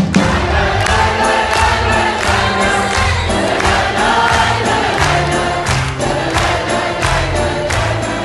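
Live concert music: an orchestra with strings and drums plays to a steady beat while many voices sing, the audience joining in.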